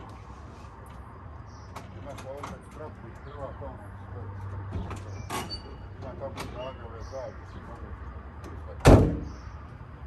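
The cab door of a 1979 Mercedes 307D camper slammed shut once, near the end, after a few lighter clicks and knocks, over a low steady hum.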